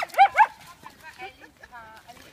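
Dogs scuffling, one giving two sharp high-pitched yips in the first half second, followed by quieter sounds.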